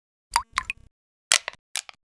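A run of about five short cartoon water-drop plop sound effects from an animated logo sting, spaced unevenly over under two seconds.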